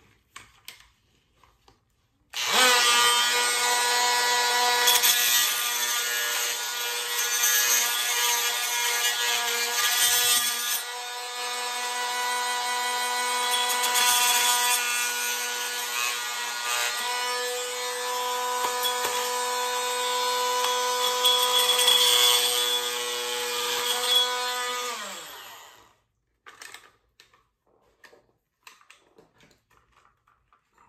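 Handheld corded power tool running steadily for about 22 seconds while it grinds away the plastic of a trail camera housing to widen the cable slot. It winds down and stops near the end, and a few faint handling clicks follow.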